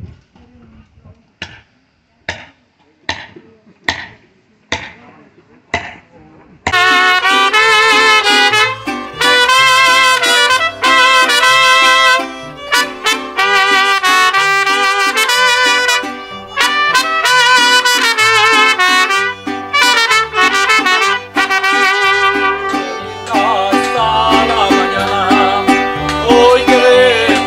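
A mariachi band playing loudly, with trumpets, violin, accordion, guitar and a walking bass line, starting abruptly about seven seconds in. Before it come six short sharp pops, a little under a second apart.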